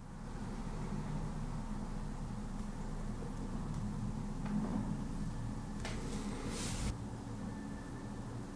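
Quiet room background: a steady low hum, with a couple of faint ticks and a brief hiss about six and a half seconds in.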